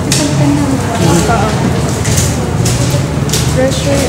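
Many young people talking at once in a loud, steady chatter, with no single voice standing out.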